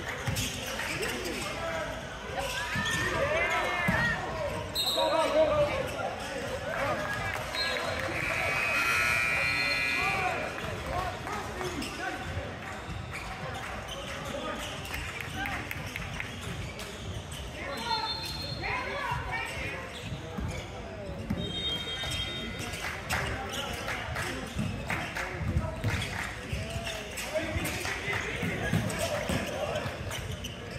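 A basketball being dribbled on a hardwood gym floor during a game, with sneakers squeaking now and then and players' voices calling out, all echoing in a large hall.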